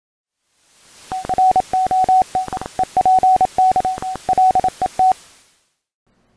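Morse-code-style beeps: one steady high tone keyed on and off in a run of short dots and longer dashes, with clicks as it keys, over a hiss of radio static that fades in and out.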